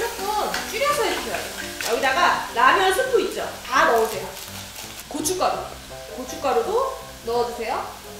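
A woman talking over vegetables and seafood sizzling in chili oil in a small aluminium pot, with a utensil stirring them.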